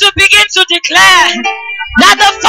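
Live worship music: a woman's amplified voice singing over instrumental backing, with the voice dropping out briefly in the second half while a held note carries on.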